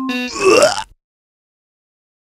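The last electronic-keyboard note of a short intro jingle, then about half a second in a brief, harsh, voice-like sound effect whose pitch bends upward.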